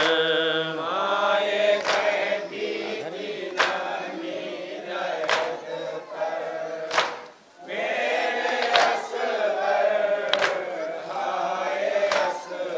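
A group of men chanting a noha, a Shia mourning lament, led at a microphone. Sharp chest-beating (matam) strikes come in time with it, about one every 1.7 seconds. The voices break off for a moment a little past the middle.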